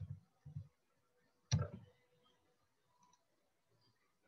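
A few faint computer keyboard keystrokes as digits are typed: soft low taps near the start, then one sharper click about a second and a half in.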